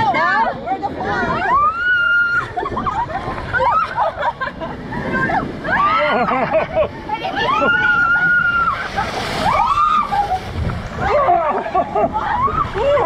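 Several people screaming and shrieking in long, high cries as they ride down a water slide together, over water rushing and sloshing in the chute.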